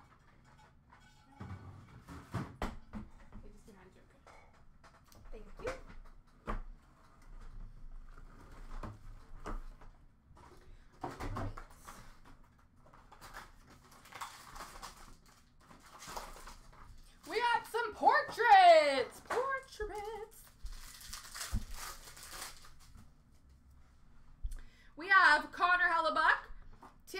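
Trading card packs and cards being handled and sorted: scattered light clicks and taps, with patches of foil-wrapper rustling. About two-thirds of the way through, a loud, high-pitched voice-like sound slides about for a couple of seconds, and another starts near the end.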